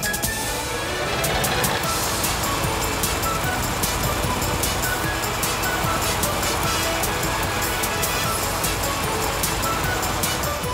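Cartoon car wash sound effect: a steady rushing of water spray and scrubbing, starting at the outset, over light background music.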